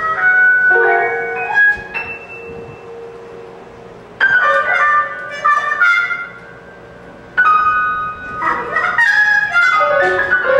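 Free-jazz improvisation for trumpet and grand piano: the trumpet plays held and wandering notes while the piano comes in with sharp, loud chords about four and seven seconds in, each dying away.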